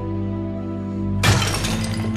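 A held, low film-score chord, cut about a second in by one loud crash and shatter as a bathroom sink is struck and breaks.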